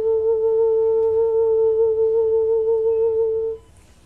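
A woman humming one steady held note with a slight waver in pitch, as vocal toning in a 'light language' session. It stops about three and a half seconds in.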